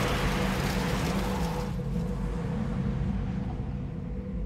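A car pulling away hard across a dirt field, wheels spinning and spraying grit. The rush of tyres and dirt drops away about two seconds in, leaving a lower rumble as the car draws off.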